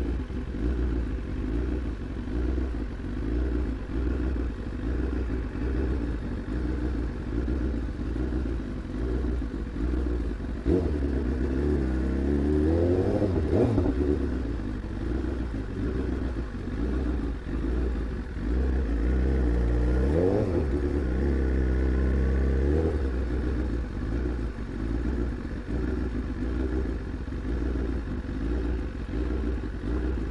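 BMW S1000RR superbike's inline-four engine running at low revs as the bike rolls slowly. Twice, about ten seconds in and again around nineteen seconds, the rider opens the throttle for a few seconds and the engine note rises and then falls back.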